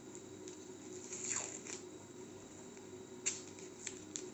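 Faint rustle and tearing of paper tape being pulled from its roll and torn off by hand, with a couple of small clicks near the end.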